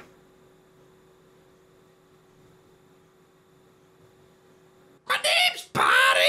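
Near silence with a faint steady hum for about five seconds, then near the end a voice breaks in loudly with two short utterances.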